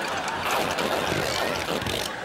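Toilet flushing, a steady rush of water set off by pressing the gas pedal that is wired to the flush handle.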